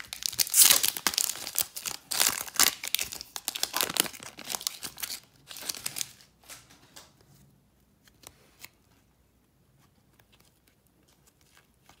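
An Upper Deck hockey card pack being torn open by hand, its wrapper crinkling and crackling loudly for about five seconds. A few soft clicks of the cards being handled follow, then it goes quiet.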